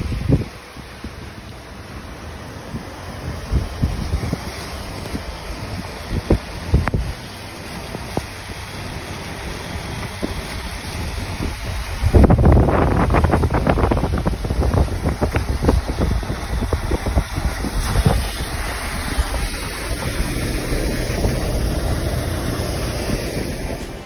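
Wind rushing over the microphone and road noise of a moving car, a rough low rumble with occasional short bumps, growing louder about halfway through.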